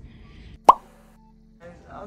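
A single sharp pop about two-thirds of a second in, over a faint steady low hum that stops shortly past halfway; a voice begins near the end.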